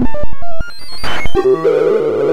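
Synthesized beeping tones from a Sound of Sorting–style visualizer: each pitch follows the value of the array element being accessed as an in-place MSD radix sort runs. A rapid string of clicks and short blips opens the sound, then quick stepped tones climb in pitch, and from about two-thirds of the way in a dense jumble of overlapping tones takes over.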